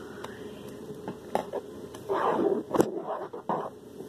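Scraping and clicking of a utensil being worked through a lumpy cornstarch slime mixture in a plastic bowl, in short irregular strokes that grow busier about halfway through.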